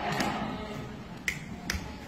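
A few sharp clicks, one near the start and two close together about a second and a half in, over the low steady noise of a livestock barn.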